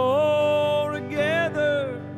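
Male country vocal holding the word "old" as a long steady note, then a shorter phrase that wavers in pitch near the end, over strummed Fender Stratocaster electric guitar.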